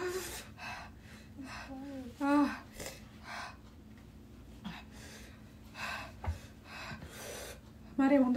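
A woman gasping and breathing hard through pursed lips, in about a dozen short, irregular puffs, with a brief whimpering voice sound about two seconds in. It is the distress of the burn from the extremely hot Paqui One Chip Challenge chip.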